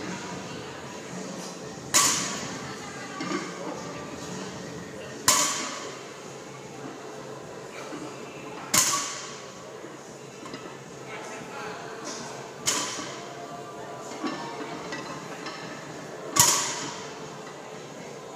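Loaded barbell set down on the gym floor after each deadlift rep: five clanks with a short metallic ring, about three and a half seconds apart.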